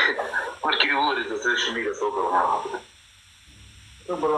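Speech only: a person talking, falling silent about three seconds in.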